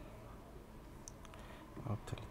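A few faint computer mouse clicks, about a second in, over low room hiss.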